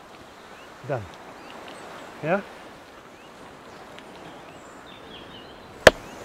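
A single sharp knock near the end: a wooden club striking an old dry coconut to crack its shell, the hollow sound of the strike being the sign that the shell is breaking.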